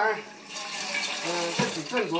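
Kitchen faucet running water into a rice cooker's inner pot in a stainless steel sink, starting about half a second in and running steadily.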